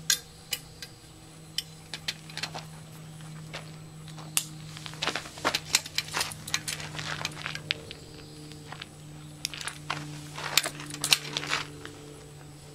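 Metal clips and buckles of a dog's cart harness clicking and jingling irregularly as the harness is fastened by hand, over a steady low hum.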